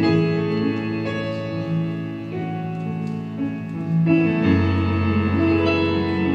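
Live instrumental band music led by a Nord Stage keyboard playing held chords. A strong low bass note comes in about four and a half seconds in.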